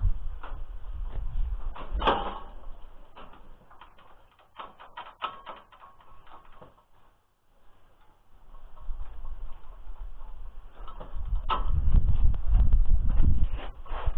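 Scattered metal knocks and clanks from handling a rotary disc mower's frame while it is being fitted, over an uneven heavy low rumble that is loud in the first two seconds and again from about nine seconds in.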